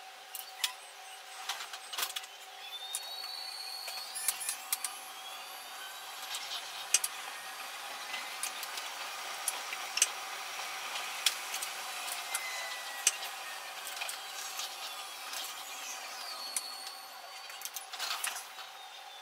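Metro train running along the track, heard from the driver's cab, with many sharp clicks and squeals over a steady running noise. A high whine rises about three seconds in and falls away again near the end.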